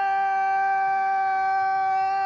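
A woman's voice holding one long note at an unchanging pitch.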